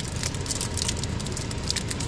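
Plastic packaging crinkling and crackling in quick, irregular little clicks as hands struggle to open a hard-to-open sealed pack, over a low steady rumble.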